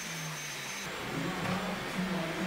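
A hair dryer blowing steadily.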